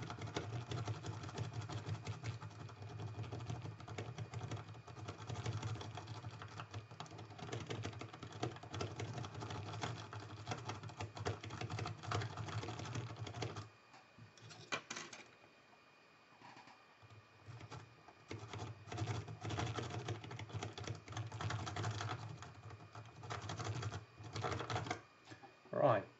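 A lock-pick rake scrubbed rapidly in and out of the keyway of a Mila six-pin euro cylinder, its pin tumblers clicking and scraping as they are raked toward the shear line. The raking runs for about 14 seconds, stops for a few seconds, then starts again until shortly before the end.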